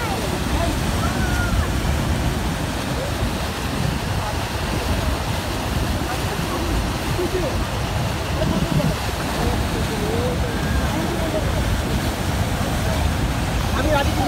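Niagara Falls' water pouring over the brink: a steady, dense rush, strongest low down, with faint voices of people in the background.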